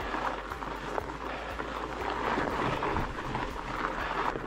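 Surly Ice Cream Truck fat bike's wide tyres rolling over loose gravel and rock on a steep climb: an even crunching with small clicks of stones.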